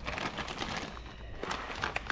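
Clear plastic parts bag crinkling and rustling as it is handled, with a few light clicks in the second half.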